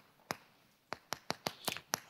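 Chalk clicking and tapping on a chalkboard as characters are written: a single tap about a third of a second in, then a quick run of about eight taps in the second half.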